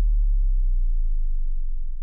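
Deep sub-bass tone from a trailer sound-design boom, held steady as its upper rumble dies away, then fading out at the very end.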